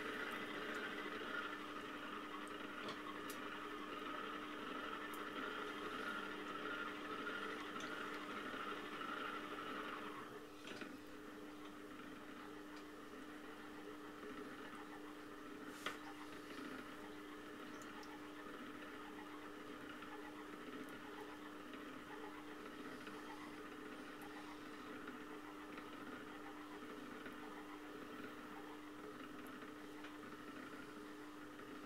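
Electric potter's wheel running with a steady motor hum while wet clay is shaped on it; a higher whirr in the sound drops away about ten seconds in, and there is a single sharp click near the sixteen-second mark.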